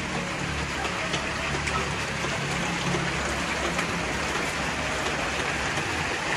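Steady rain falling on the shelter roof, an even hiss with faint scattered drip ticks, over a steady low hum.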